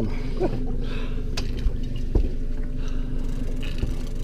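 Boat engine idling: a steady low hum, with a couple of faint knocks in the middle.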